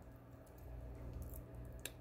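A few faint, light clicks of small wire rings being handled, over a low steady room hum.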